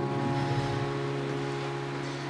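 A keyboard holding a low sustained chord between sung lines, slowly fading, over a faint hiss.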